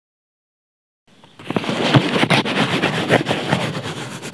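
Fingertips rubbing and scratching a sheet of paper laid over an earphone cable: a dense crackly rustle with many small clicks, starting about a second in after silence.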